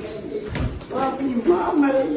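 Several people talking over one another, with a dull low thump about half a second in.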